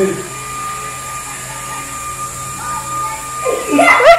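Steady whine of a small flying orb toy's propeller motor as it hovers and is tossed up, with a voice coming in near the end.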